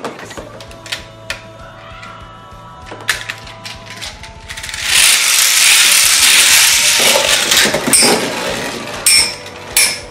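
About halfway through, a loud rushing whir as two Magic Top 2 (魔幻陀螺2) toy battle tops are launched into a plastic arena, then a few sharp clacks as the spinning tops strike each other.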